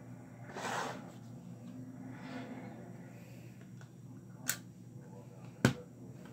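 LEGO plastic bricks being handled and pressed together on a tabletop: a brief rustle about a second in, then two sharp clicks a little over a second apart near the end, the second louder.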